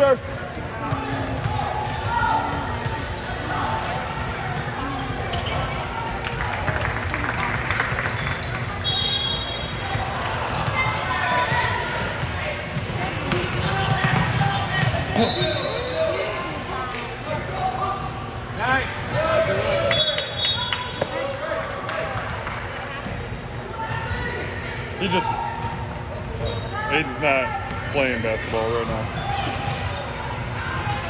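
A basketball bouncing on a hardwood gym floor during play, with the voices of players and spectators in a large indoor hall. A few short high squeaks come at intervals.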